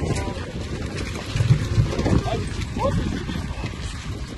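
A pickup truck being pushed by hand, its tyres rolling over cobblestone paving with a low, uneven rumble, with short indistinct vocal sounds.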